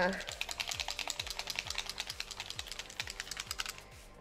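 A fast run of light tapping clicks, many a second, that stops shortly before the end, over quiet background music with a steady low beat.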